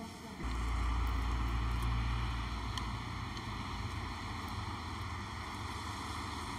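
Steady outdoor noise starting about half a second in: a heavy low rumble, strongest until about three seconds in, with a hiss over it. It sounds like wind on the microphone and distant traffic.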